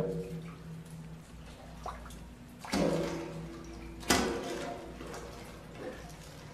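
Water sloshing and dripping in a flooded drainage pipe while a wire is worked inside it. About three and four seconds in there are two louder knocks or scrapes, each ringing briefly in the pipe.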